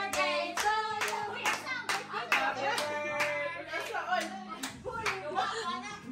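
A small group clapping hands together in a steady rhythm, about two claps a second.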